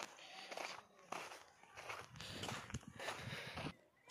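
Footsteps on a dry dirt trail strewn with dead leaves and twigs, about two steps a second.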